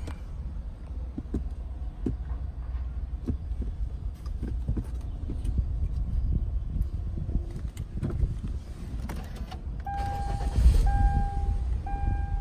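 Inside a 2011 Kia Sorento's cabin: a low steady hum with scattered small clicks. About ten seconds in, the engine is started and settles to a very smooth idle, and a dashboard warning chime begins, one long beep about every second.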